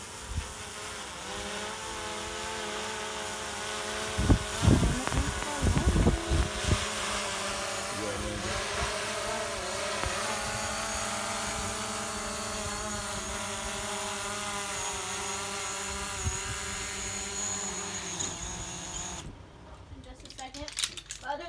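Quadcopter drone's propellers whining in flight: a steady buzz made of several pitches that waver as it manoeuvres, with a few low thumps between about four and seven seconds in. The motors cut off suddenly near the end as it lands.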